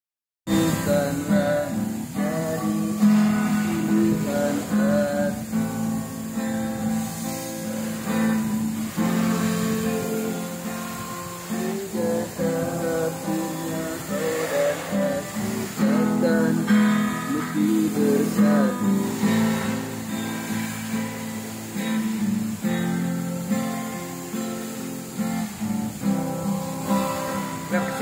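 Steel-string acoustic guitar played fingerstyle: a continuous passage of plucked chords and melody notes over a steady bass, starting about half a second in.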